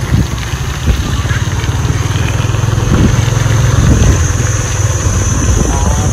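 Small motorbike engine running steadily at low road speed, a continuous low rumble heard from the rider's seat.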